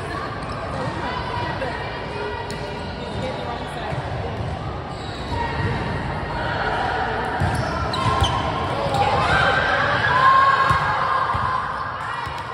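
A volleyball being struck and bounced on a hard gym floor, with players' voices echoing around the hall, louder in the last few seconds.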